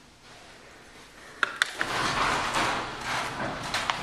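Two sharp clicks about a second and a half in, then the steady, rising noise of a sectional roll-up garage door starting to open along its tracks.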